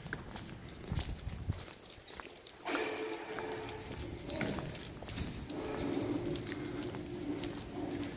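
Footsteps on a hard concrete floor in a large hall, a run of short knocks, with a steady low hum joining from about three seconds in.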